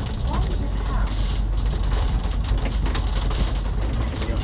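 Cabin noise inside an Alexander Dennis Enviro 500 double-decker bus on the move: a steady low rumble from the drivetrain and road, with frequent small rattles and clicks from the body and fittings.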